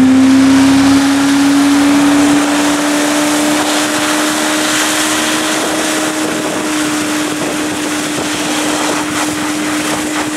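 Tow boat's engine running at high revs, its note creeping up slightly over the first couple of seconds and then holding steady, over a constant rushing hiss of spray and wind as a barefoot skier planes on the water beside the boat.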